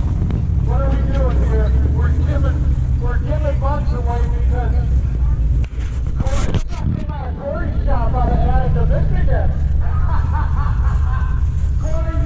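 People talking, over a steady low rumble.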